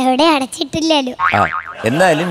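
A young girl talking into a microphone, her high voice swinging up and down in pitch.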